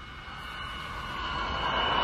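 A rushing noise that swells steadily louder, with a faint high steady tone through it: a film sound effect of a torpedo running in toward a submarine.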